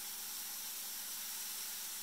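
A steady, even hiss with a faint low hum underneath.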